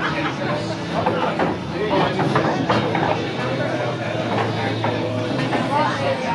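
Indistinct background chatter of several people talking, over a steady low hum.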